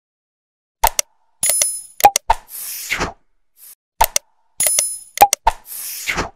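Subscribe-button outro sound effects: sharp clicks, a bright bell ding and a whoosh. The sequence starts after a short silence and repeats about every three seconds.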